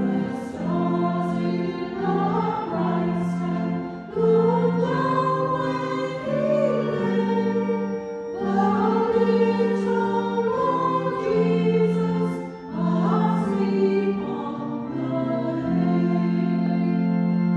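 A small choir singing a hymn in a reverberant church, with vibrato in the voices, over sustained organ chords that change in steps.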